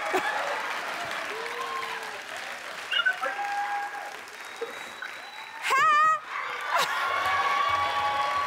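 Studio audience applauding and cheering, with scattered shouts, and a loud high-pitched scream about six seconds in.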